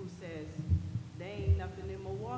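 A woman talking into a desk microphone, with two short, deep thuds about three-quarters of a second apart that are the loudest sounds: knocks on the table or the microphone stand's base carried into the mic.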